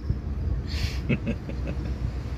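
Car engine idling, a steady low rumble heard inside the cabin of the stationary car, with a short breathy hiss under a second in and a few faint vocal sounds.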